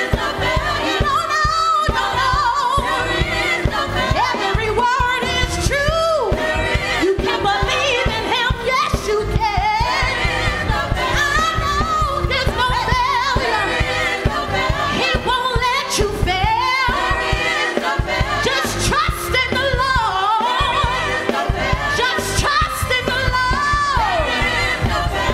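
Gospel praise team singing live, a woman leading at the front with the other voices backing her, over a steady instrumental accompaniment with a beat.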